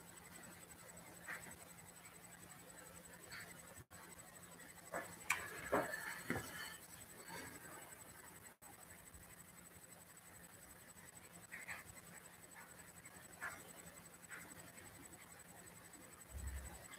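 Sheets of paper being handled and smoothed flat on a table by hand: faint scattered rustles and light taps, loudest in a cluster about five to seven seconds in, over a steady low hum.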